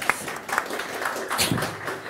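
A few scattered hand claps over a faint murmur of voices in a room.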